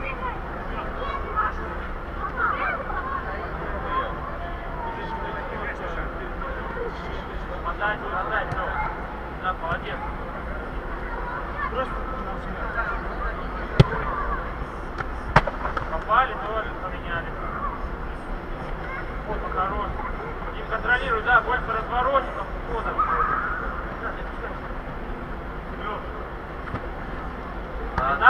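Players' shouts and calls echoing around a large inflated sports dome during a football match, with two sharp ball strikes about a second and a half apart midway through, over a steady low rumble.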